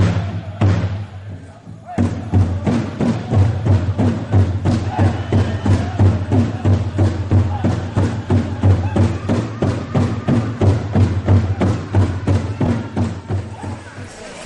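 Powwow big drum beaten in a fast, steady rhythm by a group of drummers, with the singers' voices carried over it. The beat softens for a moment and comes back hard about two seconds in.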